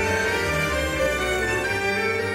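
Tango music played by a string orchestra, with sustained violin and cello notes.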